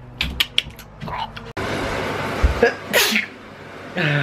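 A person sneezes once about three seconds in, a short rising intake ending in a sharp explosive burst, over a steady rushing background noise. A few light clicks come in the first half second.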